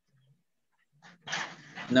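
A dog barks once, about a second in, picked up through a video-call microphone, followed by a man starting to speak.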